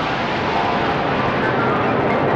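A steady rushing, jet-like sound effect with faint held tones over it, standing for a stream of magical energy flowing between the sages and the holy man.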